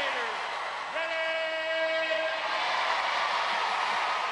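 A horn sounds one steady note for about a second and a half, the start signal for the event, over a cheering crowd in an indoor arena.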